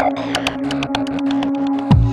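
Synthesizer music: one held tone with rapid, uneven clicks over it, then a deep bass with falling pitch sweeps coming in just before the end.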